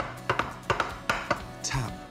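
A frying pan knocked several times against a wooden board, sharp irregular knocks that loosen the cooked frittata from the bottom of the pan, over background music.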